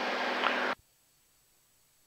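Cabin engine and propeller drone of a Beechcraft G36 Bonanza in flight, picked up by the pilot's headset microphone as a steady hum and hiss. About three quarters of a second in it cuts off suddenly to dead silence, as the intercom's voice-activated squelch closes.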